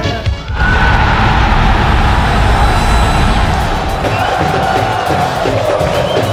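Sung music cuts off about half a second in, giving way to a stadium crowd of football fans cheering a goal, a loud, dense roar that carries on.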